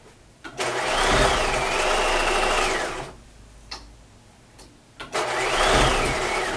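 Bernina sewing machine stitching through denim in two short runs. The motor whine climbs quickly, holds steady for about two seconds and winds down, then starts again about five seconds in.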